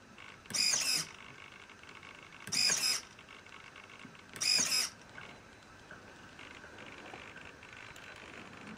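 Small servo motor whirring in three short bursts about two seconds apart as it presses the VHF receiver's push button, stepping the receiver to its next stored frequency.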